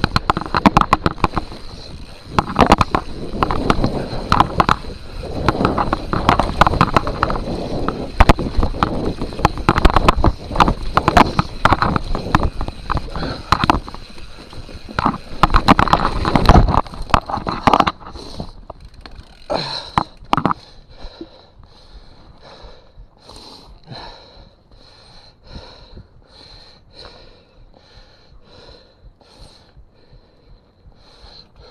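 Mountain bike rolling over a rough forest dirt trail: tyres crunching on dirt and the chain and frame rattling and knocking over bumps. After about eighteen seconds the bike slows to a stop and the noise drops away, leaving the rider's heavy breathing, about one breath a second.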